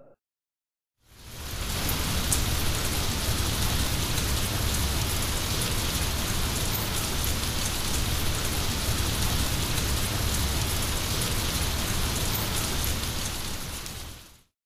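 Steady rain-like rushing noise with a few small scattered clicks, fading in about a second in after a brief silence.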